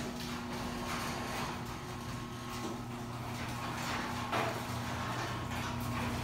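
Electric garage door opener running with a steady hum as the overhead door rolls open, with one light knock about four seconds in.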